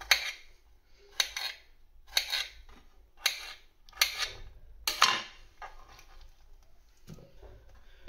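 Kitchen knife chopping cucumber into cubes on a glass chopping board: sharp clicks of the blade striking the glass, roughly one a second, fainter in the last few seconds.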